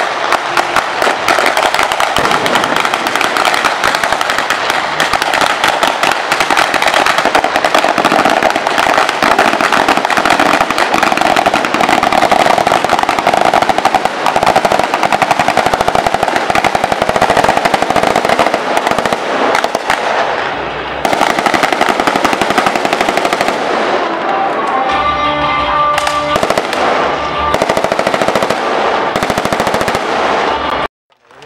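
Rapid automatic-weapon fire, many overlapping bursts in a dense, unbroken stream, easing briefly about twenty seconds in.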